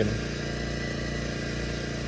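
A small engine running steadily at constant speed, a low even hum with a fine rapid firing beat.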